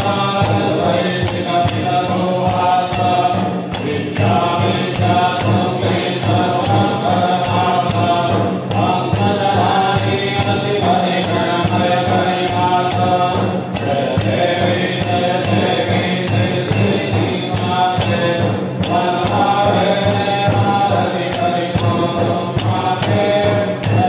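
Hindu devotional chanting sung as a melody over music, with a steady beat of jingling percussion.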